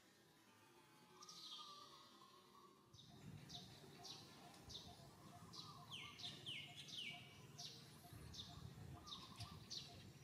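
Faint bird chirping: short, high, falling chirps repeated about twice a second, starting about three seconds in.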